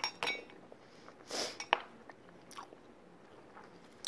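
Close-miked eating of crunchy salad: a few sharp clicks of a metal fork against the plastic tray and a short crunch, with the loudest click a little under two seconds in.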